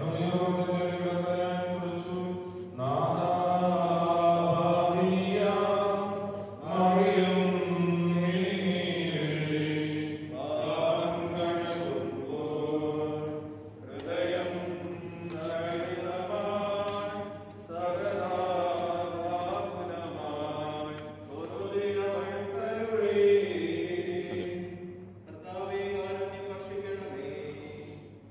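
Liturgical funeral chanting: a voice chanting in long, held phrases, each a few seconds long, with short breaks between them.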